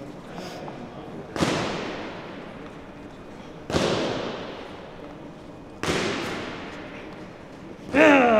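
Three loud sudden impacts, about two seconds apart, each dying away slowly over a couple of seconds.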